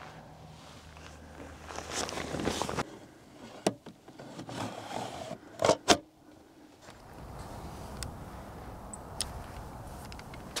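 Hands working the back of an 8x10 wooden field camera: rustling, then a few sharp clicks and knocks, the loudest a quick pair about six seconds in.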